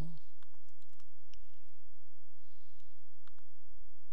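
Computer mouse clicks and key presses, several in the first second and a couple more later on, over a steady low electrical hum.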